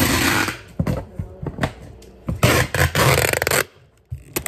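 Things handled right at the microphone, making two loud bursts of scraping and rubbing: one at the very start and a longer one from a little past two seconds to near the end, with small knocks between them.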